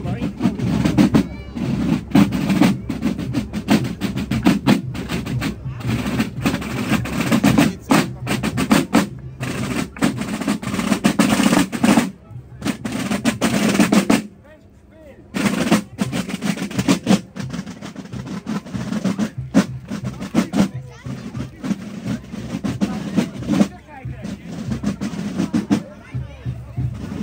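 Basel Fasnacht marching music: Basel side drums played in rapid rolls and strokes, with piccolos piping the march. The playing drops away briefly about halfway, then the drumming picks up again.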